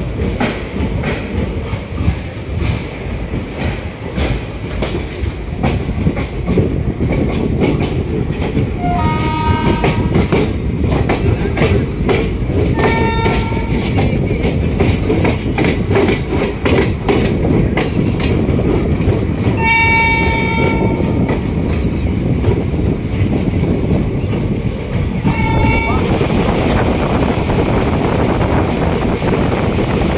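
Passenger train wheels clattering over rail joints as the train pulls out and gathers speed, heard from an open coach door. A train horn sounds four times: short blasts about a third of the way in and near the middle, a longer blast about two-thirds in, and a short one near the end. Wind and running noise swell over the last few seconds.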